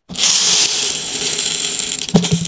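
Small laundry scent beads pouring into a glass jar, a steady rushing patter that starts suddenly and eases slightly after the first half second.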